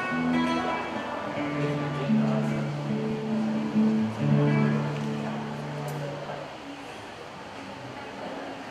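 Acoustic guitar playing a slow introduction, notes ringing one after another, dying away about six and a half seconds in.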